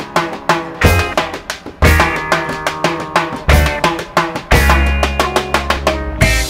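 Background music: a song with a drum kit playing a steady beat over pitched instruments.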